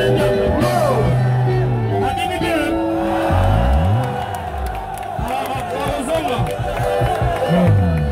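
Live band music played loud over stage speakers, with a large crowd shouting and whooping along. The music drops back about four seconds in, and the crowd's voices come forward.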